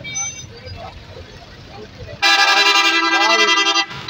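A vehicle horn sounds one long, loud, steady blast starting about halfway through and lasting nearly two seconds.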